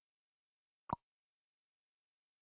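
A single short pop a little under a second in, with dead silence around it.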